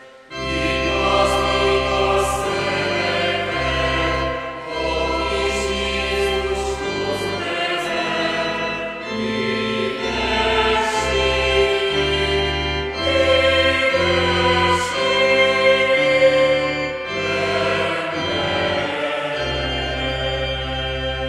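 A choir singing a Christmas song over held bass notes that change every second or so. The song starts about a third of a second in, after a brief gap.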